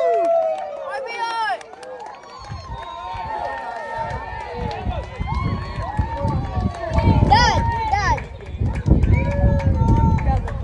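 Many high-pitched young voices calling and shouting over one another, with a low irregular rumble joining in about two and a half seconds in.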